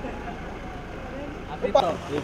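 A car engine idling with a low steady rumble under indistinct voices; near the end there is a sharp click and the rumble cuts off.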